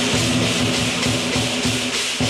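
Lion dance percussion: a large drum beating a fast, even rhythm of about four to five strokes a second, with gong and clashing cymbals that come in loudly right at the start.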